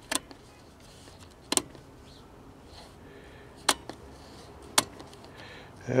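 Four sharp, isolated clicks, irregularly spaced: the selector switches and knobs of a Beam Builder CRT tester being set during a picture-tube test.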